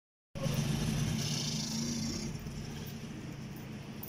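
Small motorcycle engine running as it rides past close by. It is loudest in the first two seconds, then fades over steady street traffic.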